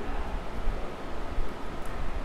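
Handling noise: a hand moving right against the phone's microphone, giving a low, even rustling rumble.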